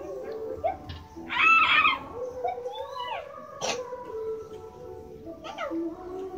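A cat meowing: one loud, long, wavering call about a second in, then a shorter falling call, with a single sharp click just after the middle.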